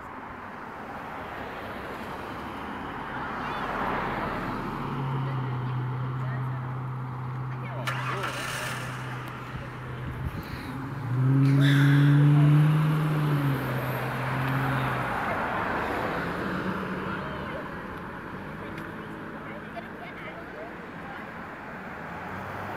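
Road traffic: cars passing along the road, their tyre noise swelling and fading, with a low steady drone through the middle that is loudest about eleven to thirteen seconds in.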